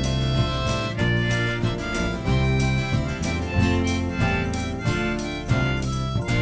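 Live band playing an instrumental passage: a harmonica held in a neck rack leads over acoustic guitar, bass guitar and drums, with a steady beat.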